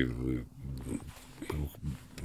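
A man's drawn-out, wavering vocal sound trailing off in the first half-second, then only faint breaths and small murmurs as he is choked up, close to tears.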